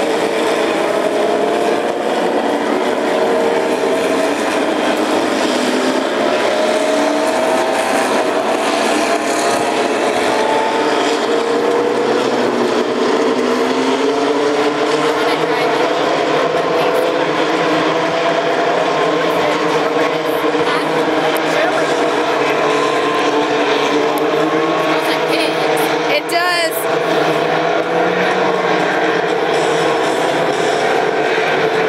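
A field of IndyCar engines running together at pace-lap speed: a steady drone of several engine notes that slowly drift up and down in pitch, with a brief sharper sound near the end.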